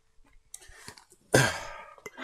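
A person sighs heavily into a microphone about a second in, after near silence, the breath fading out over about half a second.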